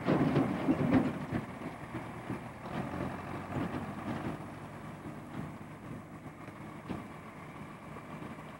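John Deere tractor engine running as it pulls a forage wagon across a field, loudest in the first second or so, then fading as it moves away.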